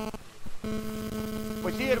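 Steady electrical hum, a buzzing tone with several overtones, that drops out for about half a second near the start and then returns.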